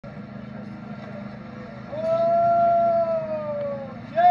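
A man's voice, starting about halfway in, holds one long high wailing note that slowly falls away: the cry of an Albanian vajtim, a chanted funeral lament. A steady low hum runs underneath, alone in the first half.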